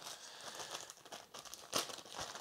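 Faint crinkling and rustling, like plastic packets of fly-tying material being handled while he looks for the tail material, with a few light clicks and one sharper tick near the end.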